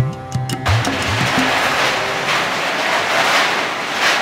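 Sitar and tabla music cuts off under a second in and gives way to a dense, continuous clatter of many stainless steel plates and bowls being handled and stacked.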